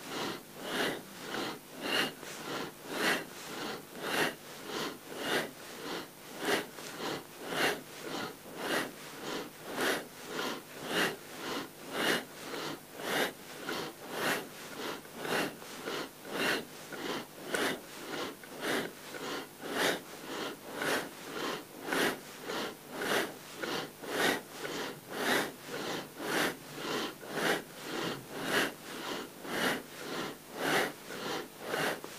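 Deep, forceful breathing through the nose, in and out in a steady rhythm of about one loud breath a second, timed to a seated Kundalini yoga spinal flex: in flexing forward, out flexing back.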